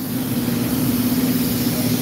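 Electric tram standing at the stop, giving a steady low hum over street rumble that grows slightly louder.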